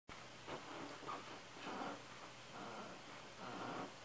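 Faint electric guitar notes picked softly, a few short phrases at low level.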